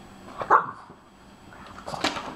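French bulldog puppy giving a single short bark about half a second in, with a second short sound near the end.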